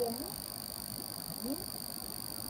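Steady faint high-pitched whine and hiss in a gap between speech, with two or three faint, short upward-gliding sounds.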